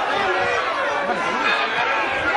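Several voices talking and calling out at once, an overlapping chatter of players and spectators around a football pitch during play.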